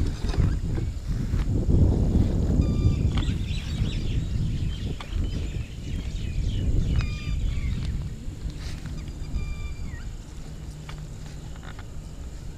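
Wind rumbling on a phone microphone, with scattered clicks. Short, high-pitched animal calls come a few seconds apart.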